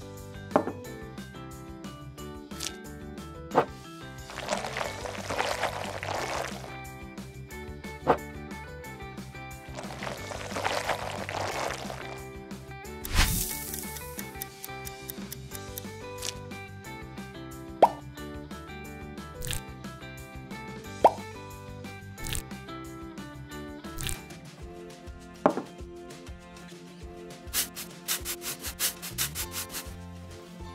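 Background music runs throughout under small clicks, taps and plops of miniature bowls and tools being handled on a wooden counter. Two stretches of soft hiss come a few seconds in and again about ten seconds in, and a quick run of light ticks comes near the end.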